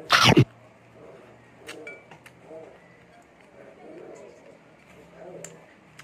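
A person biting into a piece of air-fried chicken, with a short loud crunch right at the start, then chewing with faint mouth clicks and soft low murmurs.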